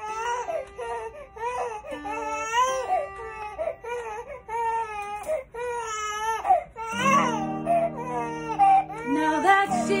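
An infant crying in repeated rising and falling wails. About seven seconds in, an acoustic guitar begins strumming chords under the cries.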